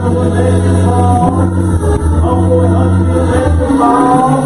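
Gospel church music: singing over held low keyboard chords.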